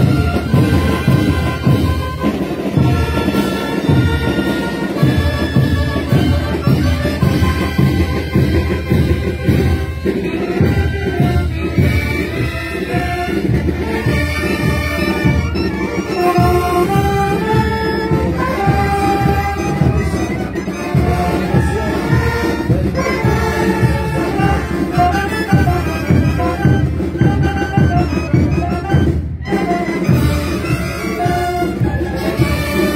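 A school marching band playing a tune, saxophones carrying the melody over a steady beat.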